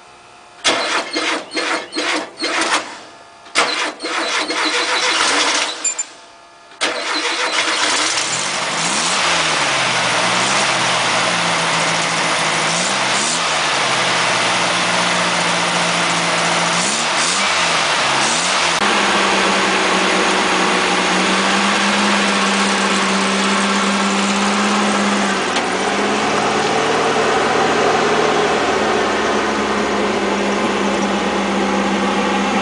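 Sandrail's rear-mounted, air-cooled VW-style flat-four gasoline engine being cranked in several short bursts and catching about seven seconds in. It is then revved three times and settles into a steady idle.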